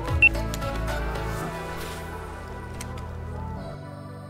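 Background music with long held tones; it changes near the end into a calmer, ambient-sounding piece.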